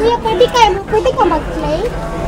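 High-pitched voices talking and exclaiming, with no clear words.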